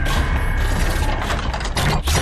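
Robot-transformation sound effect: a fast, dense run of mechanical clicking and ratcheting like shifting gears, with a thin steady whine through the first second, marking a robot changing into a car.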